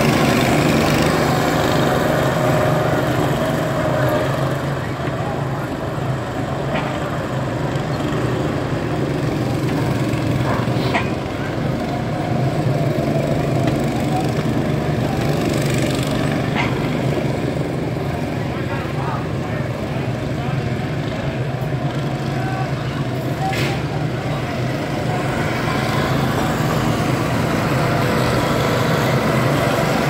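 Go-kart engines running as several karts drive around the track, a steady engine drone throughout.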